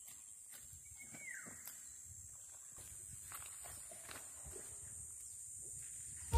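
Faint small clicks and rustles of a bolo knife cutting wild amaranth stems among river stones. About a second in comes a brief, falling animal call. A steady high hiss lies under it all.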